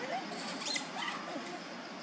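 Juvenile long-tailed macaques giving a few short, high-pitched squeaks over steady outdoor background noise.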